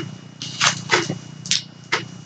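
About five short crinkles of paper, one roughly every half second, as a sticker book and its sticker sheet are handled.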